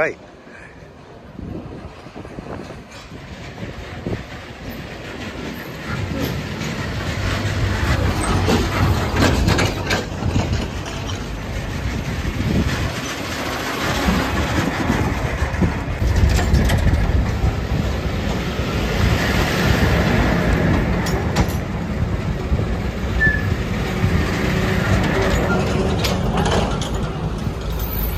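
Heavy traffic on an unpaved, dusty road: a bus and other vehicles rumbling with engine and tyre noise on the dirt and gravel. The rumble builds up over the first several seconds and then stays loud.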